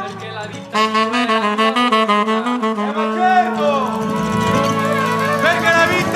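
Band music led by saxophone and brass. It gets louder, with quick repeated notes, just under a second in.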